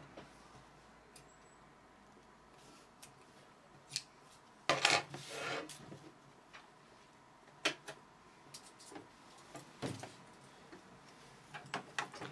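Dressmaking shears snipping fabric, with scattered sharp clicks of the blades and handling, and a longer, louder fabric rustle about five seconds in.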